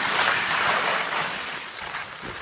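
Skis sliding and scraping over firm, tracked snow on a downhill run: a steady scraping hiss, loudest in the first second.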